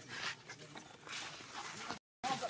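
Infant macaque whimpering faintly as it clings to its walking mother, among short scuffling noises.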